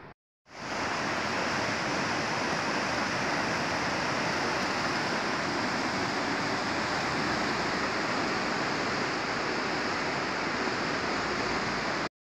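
Steady rushing of a swollen, flooding river, an even noise that starts just after a brief dropout and holds without a break.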